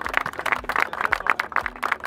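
A group of people applauding, many overlapping hand claps.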